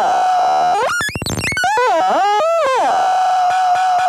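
Electronic synthesizer tones: a held note, then sweeping glides up and down in pitch with a rapid buzzing rattle about a second in, then settling back onto the held note.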